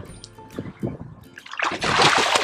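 Seawater sloshing against a boat hull, then near the end a loud splash as a hooked kingfish thrashes at the surface beside the boat.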